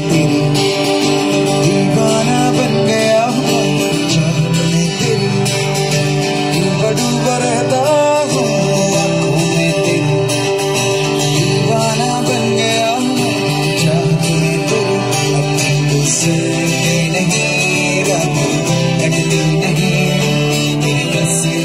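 Live acoustic band: several acoustic guitars strummed together, with a lead singer singing into a microphone over them, steady and continuous.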